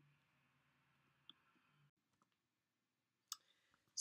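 Near silence with a faint low hum that stops about two seconds in, and a few faint clicks, the sharpest about three seconds in.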